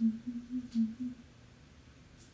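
A woman humming a few short notes of a tune, about five notes that stop a little over a second in.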